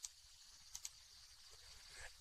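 Near silence: room tone with a few faint brief clicks, the first right at the start and two close together about three quarters of a second in.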